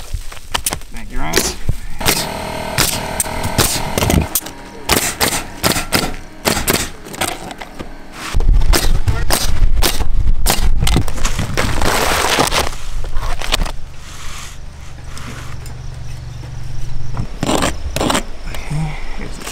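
Pneumatic coil roofing nailer firing nails through asphalt shingles, many sharp shots in irregular runs. A loud steady low drone joins about eight seconds in and stops shortly before the end.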